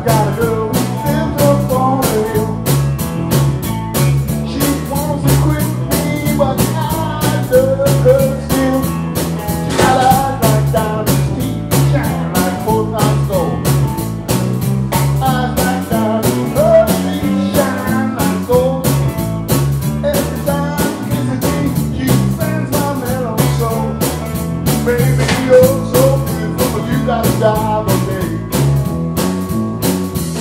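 Live blues band playing with a steady drum beat, electric guitar and bass guitar, and a man singing into a microphone.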